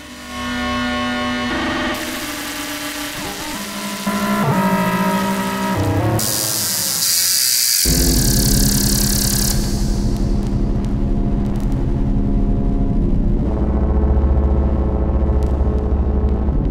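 Eurorack modular synthesizer playing a heavy FM patch: an E-RM Polygogo oscillator through two Mutable Instruments Ripples filters, frequency-modulated by a WMD SSF Spectrum VCO and played from a keyboard, with pitched tones that shift and change. About six seconds in, a bright noisy hiss sweeps in for roughly three seconds. A deep bass drone enters suddenly about eight seconds in and thickens near the end.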